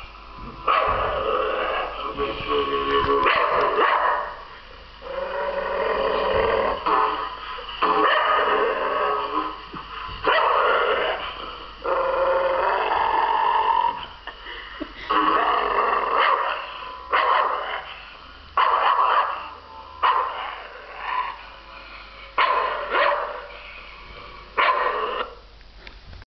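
Staffordshire Bull Terrier growling in a long series of voiced bouts with short pauses between them. The early bouts run two to three seconds each and the later ones last about a second.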